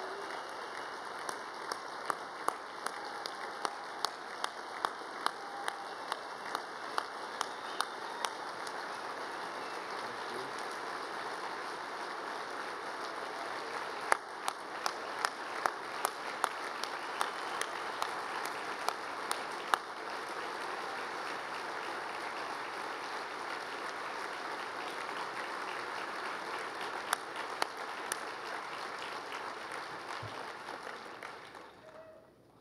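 Audience applauding steadily, with single claps close to the microphone standing out about twice a second for stretches.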